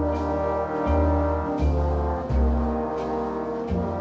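Easy-listening orchestral instrumental: sustained brass chords, with trombones prominent, held over low bass notes that change about once a second.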